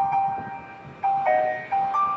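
Instrumental backing track of a slow pop ballad between sung lines: a melody of single held notes, stepping to a new pitch about every half second.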